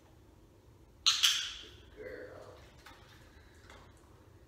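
A sudden hissing sound about a second in, fading over half a second, followed about a second later by a short, quieter vocal sound from a person's voice.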